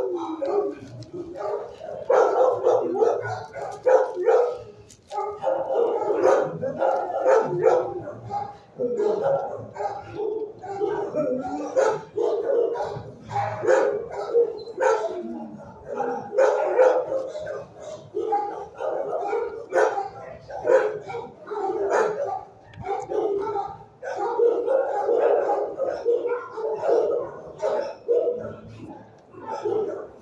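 Shelter dogs barking over and over in a kennel block, several barks close together with almost no pause.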